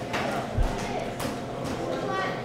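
Busy teaching-kitchen background: faint chatter and light clatter, with a soft low thump about half a second in and a small click a little after.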